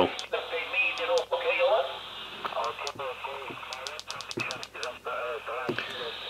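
Quansheng UV-5R Plus handheld's loudspeaker playing a distant amateur operator's voice received on upper sideband on the 20 m band, thin and narrow-sounding over steady hiss. Several sharp clicks break in as the radio's keys are pressed.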